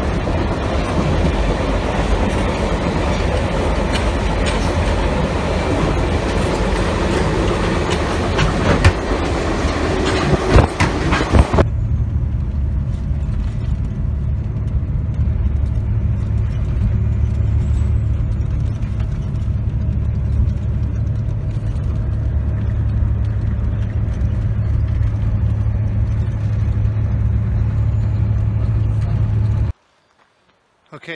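Running noise of a train heard from inside a passenger car: a loud, broad rattle with a few sharp rail clicks. About twelve seconds in it cuts abruptly to a steadier low rumble.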